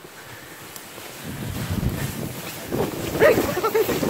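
Plastic sled sliding down snow, a scraping rush that builds from about a second in. Near the end a person's voice cries out over it.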